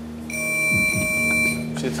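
A lie-detector sound effect: one steady electronic beep held for about a second, then cut off sharply. It goes off right after a spoken denial, signalling a lie.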